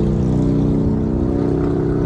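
A motorcycle engine running at a steady pitch as the bike passes close alongside and pulls in ahead, heard from inside a car's cabin over road noise.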